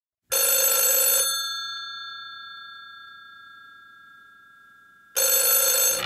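A telephone bell rings twice: a ring of about a second near the start, then a second ring near the end. Between the rings the bell's tone lingers and slowly fades.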